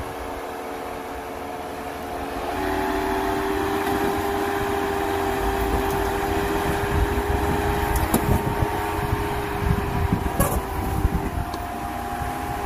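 Jeep Wrangler JL Rubicon engine running under load as it crawls over a boulder, its hum stepping up in pitch and loudness about two and a half seconds in. A few sharp knocks come later on.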